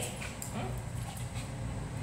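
Small dog giving a few faint whimpers.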